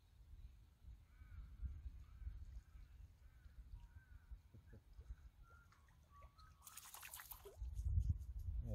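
Wind rumbling on the microphone while a small fish is played in on a light spinning rod, with a faint high chirp repeating about twice a second for several seconds; near the end, a short splash as the fish is lifted out of the water.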